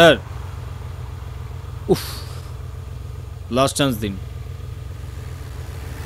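Steady low rumble of a vehicle heard from inside its cabin, with a short spoken phrase about two-thirds of the way through and a brief vocal sound about two seconds in.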